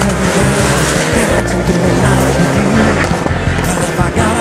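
Rock music track playing over a rally car at speed on a tarmac stage, its engine note and tyres squealing through the corners.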